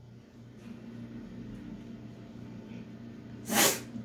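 A low steady hum, then about three and a half seconds in a short, sharp, loud breath from a woman.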